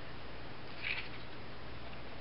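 Steady low room hum with one brief, soft rustle of a folded paper strip being handled about a second in.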